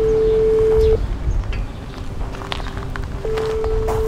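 Ringback tone of an outgoing smartphone call, played through the phone's speaker: a steady single-pitch ring that stops about a second in and sounds again about three seconds in, over a low rumble of outdoor noise.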